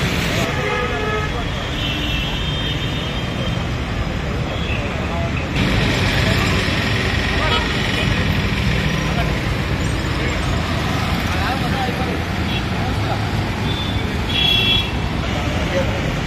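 Steady road traffic noise from passing motor vehicles, with people talking in the background and a short vehicle horn toot near the end.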